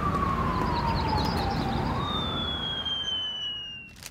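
A siren wailing over a steady hiss of street noise. Its pitch slides down for nearly two seconds, then climbs again, while a thinner high tone glides slowly down. Everything fades out near the end.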